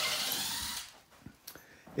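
Cordless drill-driver running briefly while securing the countertop, stopping under a second in, followed by a few faint clicks.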